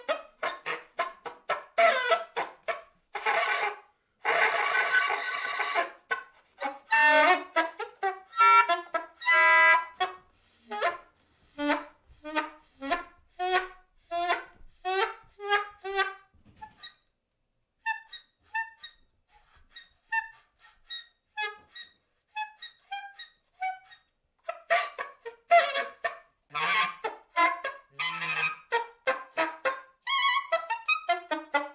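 Solo straight soprano saxophone playing short, separated notes and quick runs, with a harsh, noisy sustained passage a few seconds in. After a pause of about a second near the middle come soft, sparse high notes, and busier playing returns near the end.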